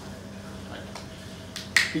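A pause filled by steady low room hum, broken near the end by one sharp click.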